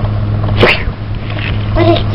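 Old home tape recording with a steady low electrical hum. A single short, sharp noise about half a second in is the loudest event, and a child's voice begins near the end.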